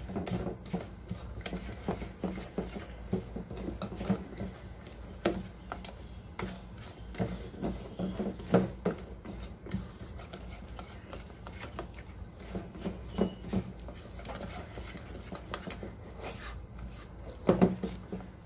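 Silicone spatula stirring thick cake batter in a stainless steel bowl: irregular soft taps and scrapes against the metal, with a louder cluster of knocks near the end.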